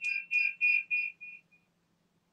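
Rapid series of short electronic beeps at one high pitch, about three to four a second, fading out and stopping partway through.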